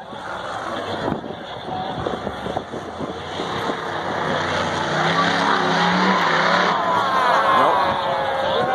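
Monster truck engine running and revving as it holds a two-wheel stand and then drives off, its revs climbing about five seconds in. Arena crowd noise and shouting sit under it and grow louder near the end.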